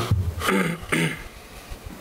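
A person clearing their throat in a few short bursts during the first second or so.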